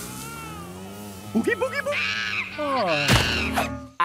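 Cartoon soundtrack music with a steady low drone, overlaid from about a second and a half in by wordless, wavering vocal sounds from the cartoon characters. A single sharp hit falls about three seconds in.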